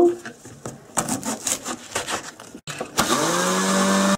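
Clicks and knocks of an electric food chopper's plastic bowl and lid being handled, then about three seconds in its motor starts, rising in pitch as it spins up and running steadily, chopping stale bread into crumbs.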